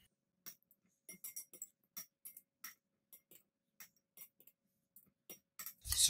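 Metal kitchen tongs clinking lightly against a glass bowl and a glass mason jar while onion slices are lifted out and packed in: a dozen or so faint, irregular clicks, several with a short glassy ring.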